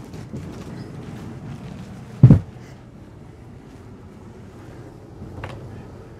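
A lifted bed platform on gas struts is pushed down shut over the under-bed storage, landing with one heavy thump about two seconds in. A faint click follows near the end, over a low steady background hum.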